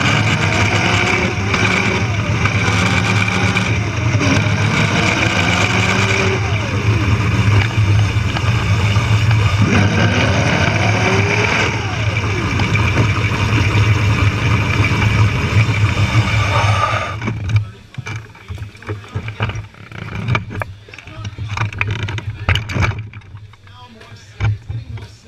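Electric motor and drivetrain of a Power Racing Series car, a modified Power Wheels ride-on, running at speed with a steady hum and a high whine. About three-quarters of the way through the motor cuts off suddenly as the car comes to a stop, leaving scattered knocks and clatter.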